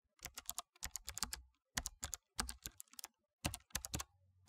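Typing on a computer keyboard: quick key clicks in short irregular runs, with brief gaps between them.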